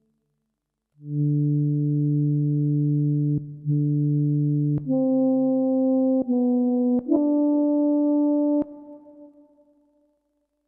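Yamaha SY77 synthesizer playing an early FM pad patch, a nearly pure sine tone with a little modulation and a pad-like envelope. About a second in, a chord swells in, then the chords change about four more times, stepping upward, with a small click at each change. The last chord is released and fades out near the end.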